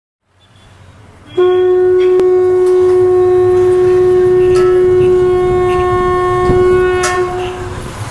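One long, steady blown note, like a horn, held for about six seconds. It starts suddenly about a second and a half in and fades out near the end, over a low background rumble.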